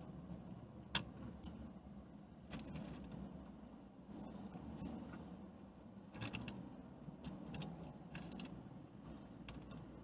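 A person chewing a big bite of burger, with scattered soft clicks and crinkles from the mouth and from handling the burger, over a low hum.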